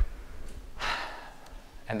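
A man taking a short, audible in-breath about a second in, a soft rushing noise with no voice in it, before speech resumes at the very end.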